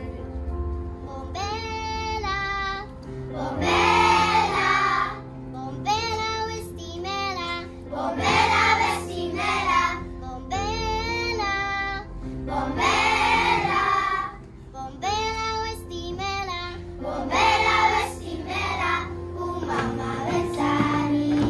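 Children's choir singing in short phrases of a second or two with brief breaks between them, over steady held accompaniment notes.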